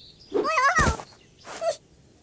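A cartoon creature's squeaky, straining wordless vocal sounds, gliding up and down in pitch as it squeezes through a small round door. A thud comes near the middle as it pops free, and a short squeak follows.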